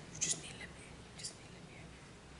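A soft whisper: two brief hissy sounds, one just after the start and a weaker one a little past the middle, over a faint low room hum.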